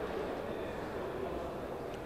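Steady low background rumble of a room, with faint distant voices and one small click near the end.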